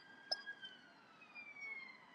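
Distant emergency vehicle siren wailing faintly, its tone gliding slowly down in pitch.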